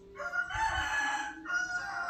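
A drawn-out animal call lasting nearly two seconds, with a short dip about one and a half seconds in.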